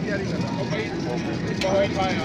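Crowd chatter: several voices talking over one another above a steady street hum, with one voice coming through more clearly near the end.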